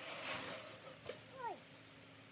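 A bicycle rolls past with a soft tyre hiss that swells and fades within the first half-second. About a second in there is a click, followed by two short calls that drop steeply in pitch, the second one the loudest.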